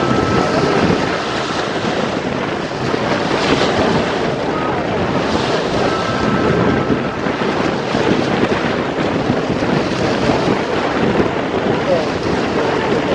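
Strong wind buffeting the microphone over choppy waves splashing and washing against a concrete shoreline, a steady, loud rush throughout.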